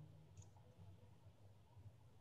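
Near silence: faint room hum with a single faint computer-mouse click about half a second in.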